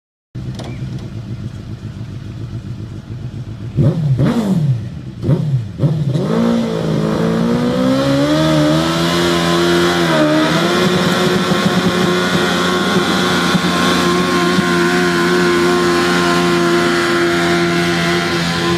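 Modified garden tractor engine idling, revved sharply several times about four seconds in, then held at high revs under load as it pulls a weight-transfer sled. Its pitch climbs, dips briefly, then holds a steady high note.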